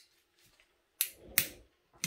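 Two sharp clicks about half a second apart from a butane torch's igniter, failing to light: the torch is out of fuel.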